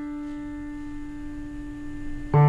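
A single grand-piano note held on and slowly dying away, one steady pure tone with faint overtones above it.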